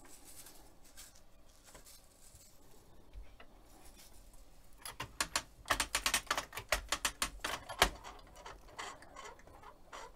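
A plastic zip tie being pulled tight through its ratchet: a run of quick clicks, about five or six a second, starting about halfway through and lasting about three seconds, after soft handling noise.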